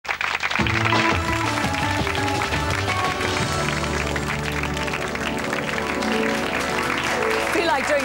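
Television programme theme music over the title sequence, with a sustained bass line under a melody. A voice begins speaking over it near the end.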